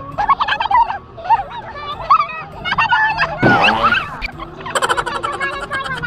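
High-pitched, warbling human voices shrieking and laughing, with a short rush of noise about three and a half seconds in.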